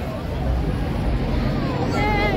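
Busy city street: traffic running past with a steady low rumble, under the chatter of passing crowds.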